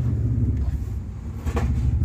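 Steady low machine hum, with a brief faint tap about one and a half seconds in.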